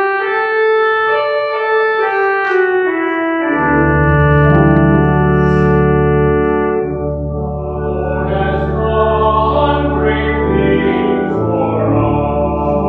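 Church organ playing sustained chords, with deep bass pedal notes coming in about three and a half seconds in.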